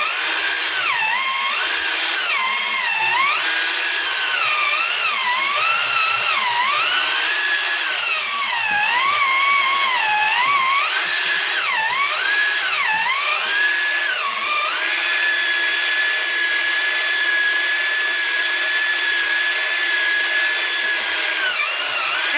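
Small electric motor of a Made By Me toy pottery wheel whining as it spins the clay. Its pitch swoops up and down as the foot pedal speeds it up and slows it, then holds at a steady higher pitch for the last several seconds.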